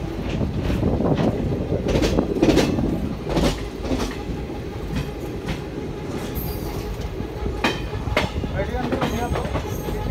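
Passenger train running through a station, heard from aboard: a steady low rumble of wheels on rails with irregular clacks as the wheels pass over rail joints and points.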